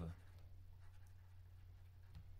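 Faint stylus scratching and light ticks on a tablet screen during handwriting, over a steady low electrical hum.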